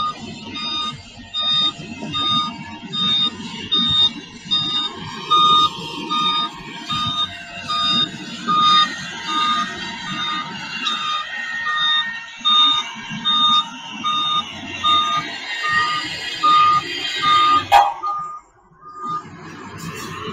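Reversing alarm of a heavy road-construction machine beeping steadily about twice a second, over diesel engine rumble. The beeping stops and the sound cuts off with a click a couple of seconds before the end.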